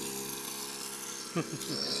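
Small motor of a child's mini dirt bike running with a steady buzz.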